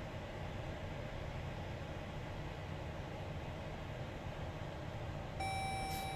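Low, steady cabin hum of a 2018 Chrysler Pacifica Hybrid creeping at walking pace. Near the end a single steady dashboard chime sounds: the park-assist alert that a parking space has been found.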